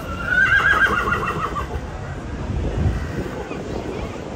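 A horse whinnies once: a quavering call lasting about a second and a half that drops slightly in pitch toward its end.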